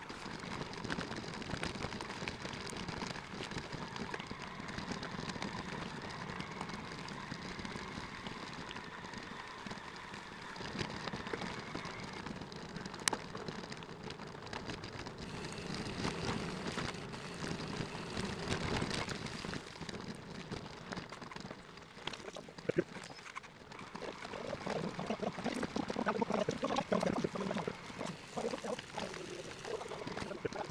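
Sped-up riding noise of an electric bike on a dirt field track: a steady crackling rush of tyres on soil and grit, dense with small clicks, turning rougher near the end.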